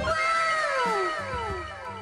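A drawn-out meow with a steadily falling pitch, overlapping itself several times as if echoed, fading over about a second and a half.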